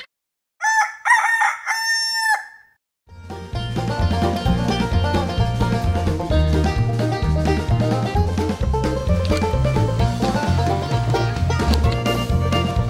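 A rooster crowing in one call of several syllables lasting about two seconds, then background music with a steady bass beat starting about three seconds in.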